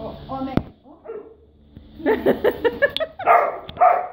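A dog barking excitedly at a toy held out of reach: a quick run of short yips, then two louder barks near the end.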